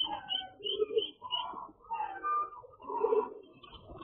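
Pigeons cooing in a run of short, repeated calls, with the high peeping of chicks above them.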